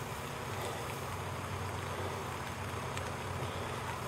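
Steady low mechanical hum from a crane hoisting a bungee jump cage, mixed with wind on the microphone.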